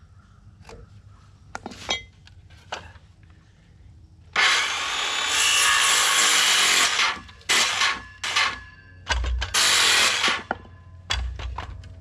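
Circular saw crosscutting a one-inch board: light tapping and scraping while the cut is marked, then the saw runs through a cut of about three seconds starting about four seconds in, followed by several shorter bursts of the saw and a couple of low thumps.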